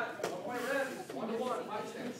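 Speech only: indistinct voices talking in a large hall.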